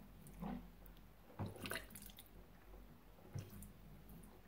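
Faint trickle of a thin stream of water running from a ceramic spout into a ceramic sink basin, with a few soft drips and splashes.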